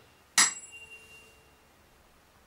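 A tuning fork struck once about half a second in: a sharp strike whose high overtones fade within a second, leaving a faint steady hum at the fork's note.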